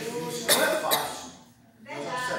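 A man coughing twice into a handheld microphone, about half a second and one second in, after a trailing bit of voice.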